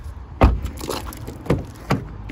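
Vauxhall Insignia car door being pushed shut with a solid thump about half a second in, followed by two lighter knocks a second or so later.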